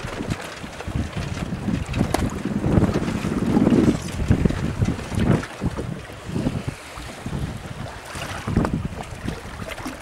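Wind buffeting the microphone in uneven gusts, over the wash of choppy sea water.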